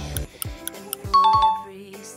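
Quiz sound effect: a two-note falling chime, ding-dong, about a second in, over light background music that opens with a ticking beat. It marks the answer being revealed.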